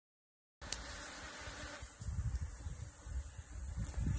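Honeybees buzzing as they fly around the entrance of a swarm bait hive. The sound starts about half a second in, and a low uneven rumble joins it from about two seconds in.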